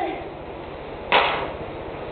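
A single sharp smack of a street-hockey shot about a second in, with a short echo off the concrete-block walls.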